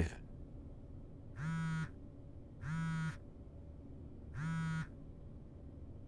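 Mobile phone buzzing three times on a desk with an incoming call, each buzz about half a second of steady low droning.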